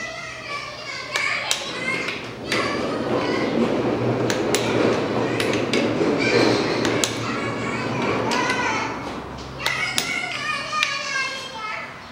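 Children's voices, talking and calling while they play, with scattered sharp clicks and knocks.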